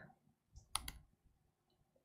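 A single sharp click on a laptop about three-quarters of a second in, opening a newly created Word document, against quiet room tone.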